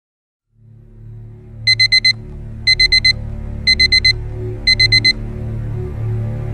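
Digital alarm clock going off: four rapid beeps, repeated in four groups about a second apart. Under it runs a low, steady music bed that fades in just before the beeping.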